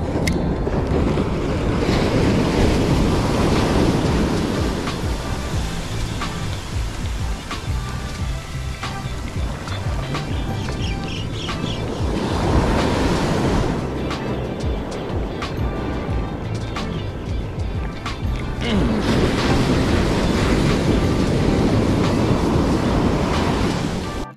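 Ocean surf breaking and washing up a sandy beach, surging louder and softer as each wave comes in, with background music underneath.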